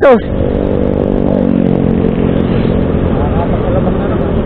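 Motorcycle engine running steadily under way, its tone drifting slightly in pitch around the middle, over a low rumble.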